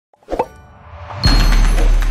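Animated-logo sound effects: a short pop just before half a second in, then a swell that builds up into a sudden loud, bass-heavy hit about a second and a quarter in, with music carrying on after it.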